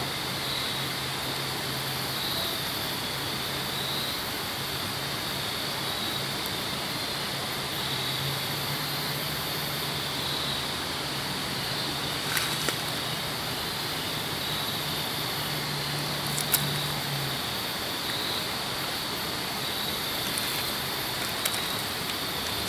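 Steady rush of river water. A high pulsing trill runs throughout, and a low hum stops about three-quarters of the way through. Two sharp clicks come a few seconds apart past the middle.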